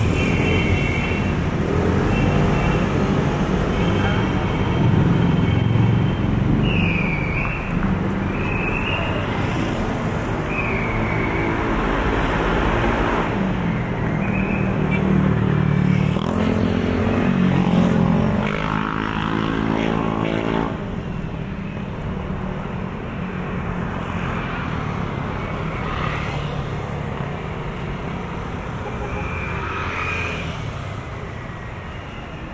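City street traffic heard from a moving e-bike: motorcycles and motor tricycles running and passing close by over constant road noise. A few short high chirps sound in the first half. About two-thirds of the way through, an engine climbs in pitch as it passes.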